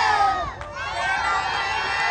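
A group of young children shouting a cheer together, their high voices overlapping, with a long held shout from about a second in.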